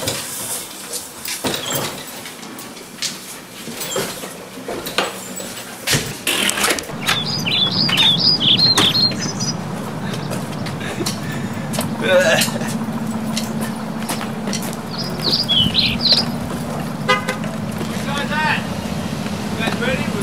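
A group of people whooping and shrieking in short high-pitched bursts, with scattered knocks during the first six seconds and a steady low hum starting about seven seconds in.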